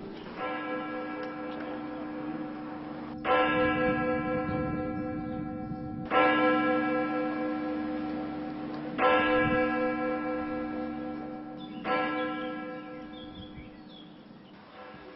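A single church bell tolling slowly: five strikes about three seconds apart, each ringing on and fading away, the first fainter than the rest.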